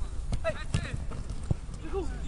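Football being played: players shouting to one another, with running footsteps and a few sharp knocks of the ball being kicked.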